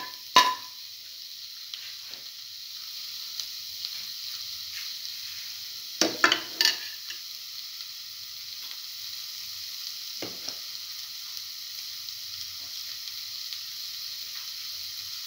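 Cottage cheese and spice mixture frying in oil in a pan, a steady sizzle, with a few sharp knocks of stirring against the pan, three close together about six seconds in.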